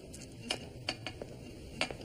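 About four light, sharp clinks of small hard objects being handled, spread across two seconds, over a faint steady room hum.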